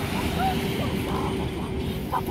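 Outdoor microphone noise: wind rumbling on the mic, with a steady low hum underneath and a few short, faint chirps.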